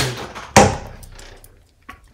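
A sliding glass door pulled open about half a second in: a sudden loud sound that fades over about a second, then a short click near the end.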